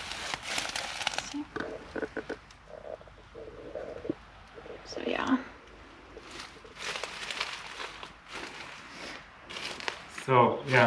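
Dry straw and hay rustling and crunching in irregular crackly bursts as someone moves through it. A brief murmur of voice comes about five seconds in.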